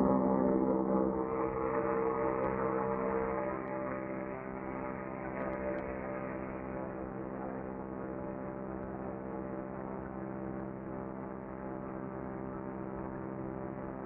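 Engine and propeller of an open-cockpit ultralight trike running at a steady pitch in flight. It is louder for the first three seconds or so, then settles to a steady, slightly quieter level.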